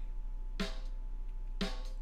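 Recorded snare drum track playing back on its own, two hits about a second apart, each with a short ringing tone; the track is run through a multiband gate that almost removes the hi-hat bleed, and through an EQ.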